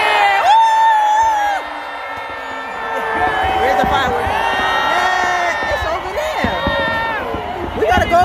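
Large crowd cheering and whooping, many voices yelling at once, some in long drawn-out shouts.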